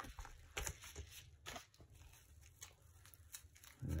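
Plastic bubble wrap crinkling in scattered short crackles as it is handled and pulled open.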